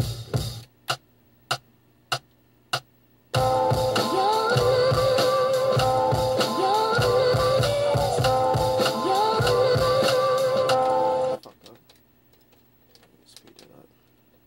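Sample chops triggered from an Akai MPC 1000's pads: six short single hits about half a second apart, then about eight seconds of a sampled melody with sliding, bending notes that cuts off suddenly. A few faint taps come near the end.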